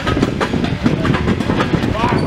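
Football practice drill: a dense run of knocks and smacks as padded players hit blocking dummies.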